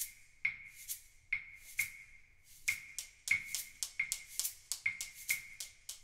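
Solo handheld percussion instrument tapping a syncopated Latin rhythm, each stroke a dry click with a single high ringing pitch. The strokes come about two a second at first and grow busier in the second half.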